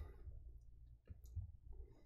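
A few faint clicks over a low steady hum.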